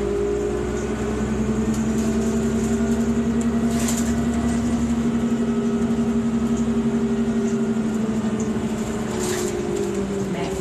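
Cabin sound of a 2001 New Flyer D40LF transit bus under way: the Cummins ISC engine and ZF Ecomat drivetrain make a steady hum with an even pulsing. A low rumble fades out about halfway, and two brief noises come about four and nine seconds in.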